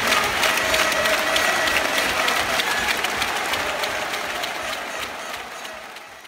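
Crowd applauding, a dense patter of clapping that fades out near the end.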